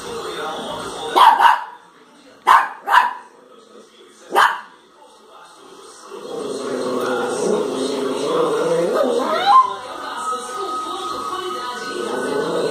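Small dog barking: four short, sharp barks in the first half, the last about four and a half seconds in, followed by a steadier background of sound.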